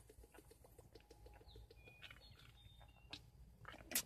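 Very quiet drinking from a large plastic bottle: faint gulping and small plastic clicks in a quick, even rhythm, with a soft knock near the end as the bottle is set down.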